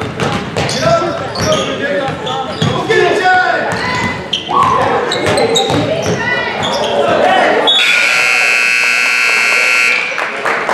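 Voices and a basketball bouncing on a gym floor, then about two seconds from the end the gym's scoreboard buzzer sounds, a steady electric buzz that stops play.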